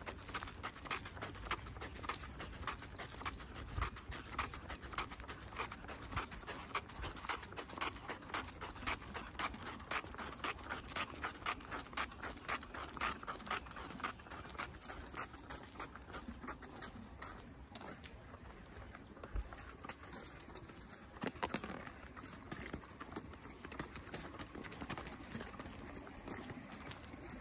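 Footsteps on asphalt: a person's steps and the pattering of a Cavalier King Charles spaniel's paws in rubber booties, a regular tapping of a few steps a second that grows sparser about halfway through.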